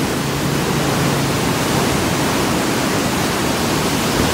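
Muddy river water rushing steadily through an open barrage gate, a loud, even flow of water.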